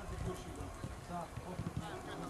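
Footballs being kicked and struck on a grass pitch: a string of dull, irregular thuds, with players' voices calling out briefly in the background.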